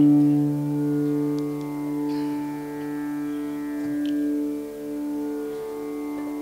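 Carnatic violin holding one long, low bowed note in raga Kalyani, played softly with no drumming. The note fades a little and dips slightly in pitch near the end.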